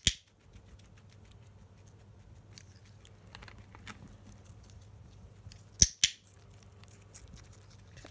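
Handheld training clicker snapped right at the start and again about six seconds in, the second a sharp double click-clack of press and release. The click is the signal that a treat is coming. Between the clicks there are only faint small ticks and rustles.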